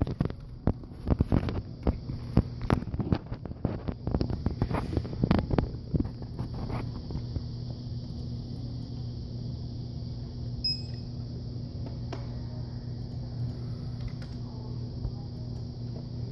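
A steady low electrical hum. Over the first half come knocks and rustles of a handheld phone being moved, and a brief high beep sounds once about ten seconds in.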